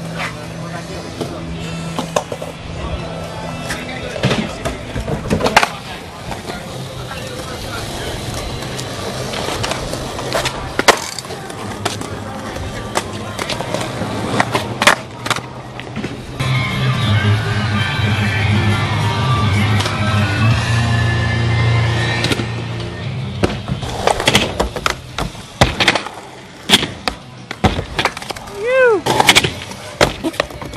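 Skateboards rolling on concrete, with repeated sharp clacks from tricks and landings, over music and voices in the background.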